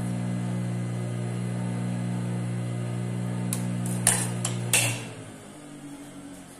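Steady hum of an industrial sewing machine's motor left running. Near the end come a few sharp scissor snips as loose thread ends are trimmed, and the hum dies away about five seconds in.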